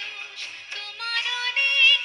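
A woman singing a Bengali song into a microphone, with instrumental accompaniment, ornamenting her line and then holding long steady notes in the second half.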